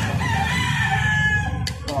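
A rooster crowing once, one long call of about a second and a half that falls slightly in pitch. Near the end come two sharp clicks of long-nose pliers on a magnetron's metal cooling fins.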